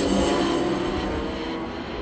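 Engines of classic race cars running on a circuit, a steady mix of engine notes that slowly fades down.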